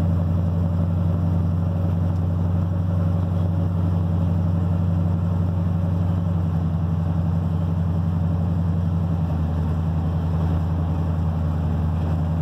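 Dually pickup truck's engine heard from inside the cab, cruising at a steady speed with a deep, even drone through its new fiberglass-packed mufflers and leak-free headers.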